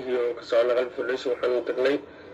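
Speech only: a woman's voice speaking in short phrases.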